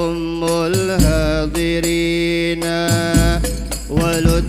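An Arabic qasidah sung in long, wavering held notes, over hadroh frame drums. Deep drum strokes come in about one second and three seconds in.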